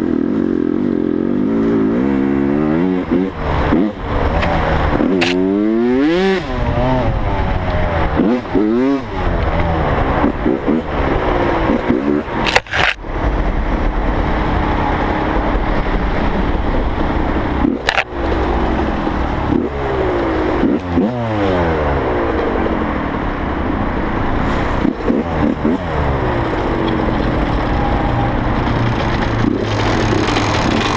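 Dirt bike engine revving up and down again and again under a riding throttle, its pitch repeatedly climbing and dropping. A few sharp knocks cut through, the strongest about twelve to thirteen seconds in.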